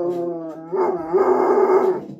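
A dog howling with its head thrown back: two long howls back to back, the second lasting over a second. It is begging for the food being eaten beside it.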